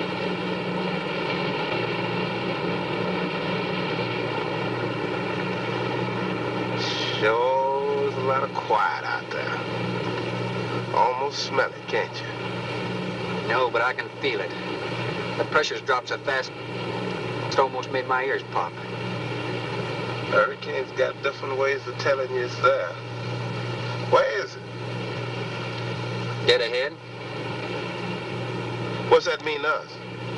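Motor cruiser's engines running with a steady low drone. Men's voices talk over it from about seven seconds in.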